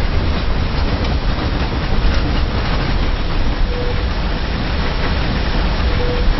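Metro train running along the yard tracks: a steady low rumble with a few faint clicks from the wheels over the rails and switches.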